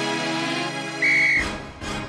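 Cartoon background music with held chords, then a single short, loud whistle blast about a second in, the signal to start a kabaddi game, followed by a noisy clatter.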